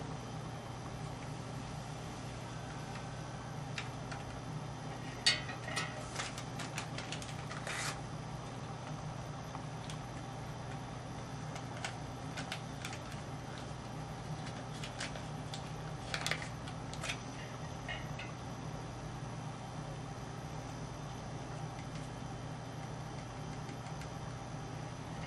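Packets of potassium sorbate and sulfite being opened and poured into a carboy of wine: scattered light clicks and rustles in two clusters, over a steady low background hum.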